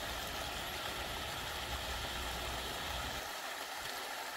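Small mountain stream running down over rocks: a steady, even rush of water.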